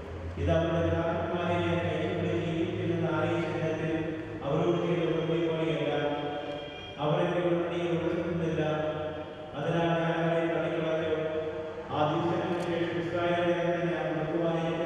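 Liturgical chant in a church: a voice chanting in long held phrases of two to three seconds each, with short breaks between them.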